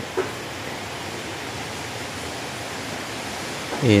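Steady background hiss at an even level, with a brief spoken syllable near the start and a word starting near the end.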